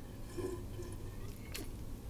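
Quiet sip of coffee, soft mouth and swallowing sounds over low room noise, with a faint click about a second and a half in.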